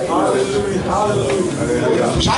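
A man speaking into a handheld microphone, his voice amplified through a PA.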